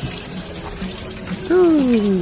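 Water pouring from a chute onto a turning water-mill wheel, a steady splashing. About one and a half seconds in, a louder voice-like tone glides downward for under a second.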